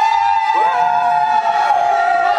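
A group of young men cheering with long held yells. One voice starts the yell and others join about half a second in, celebrating a correct answer in a game.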